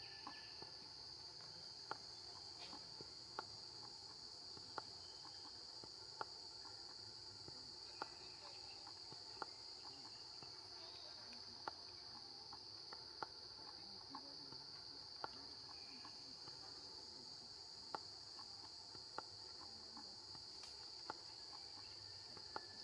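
Faint, steady high-pitched drone of insects in the forest canopy, broken by short sharp clicks about every second and a half.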